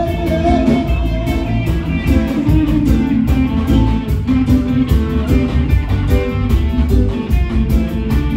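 A live band playing electric guitars over a drum kit, with a steady, even beat.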